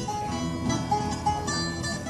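Guitar accompaniment playing a short instrumental passage of plucked notes between the sung verses of an Azorean improvised singing duel, with no voice over it.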